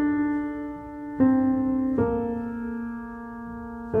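Slow piano melody of single notes struck about a second apart and left to ring and fade, the line stepping downward in pitch.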